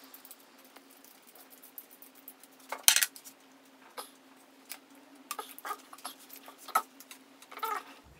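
Small metallic clicks and taps of a bicycle brake lever and grip being worked loose on the handlebar, with one sharp click about three seconds in, over a faint steady hum.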